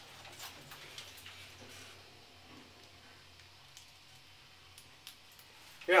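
Faint low hum of a 1990 Kone lift car travelling between floors, with a few scattered faint ticks.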